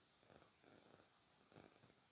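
Near silence, with a few faint soft rustles of fabric and lace being handled.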